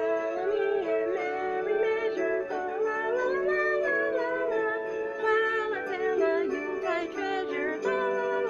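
A woman singing a Christmas song, her voice gliding over an instrumental backing track of steady held notes.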